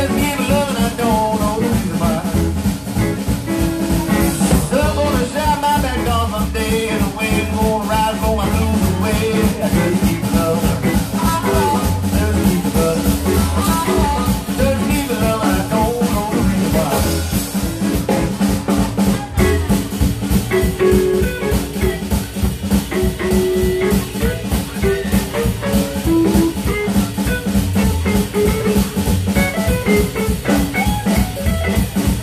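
Live blues band playing an instrumental passage: a drum kit keeps a steady beat under electric guitar, with some held notes over it.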